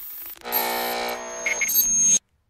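Electronic logo sting: a held synthesized note that comes in about half a second in and holds steady, cutting off suddenly just after.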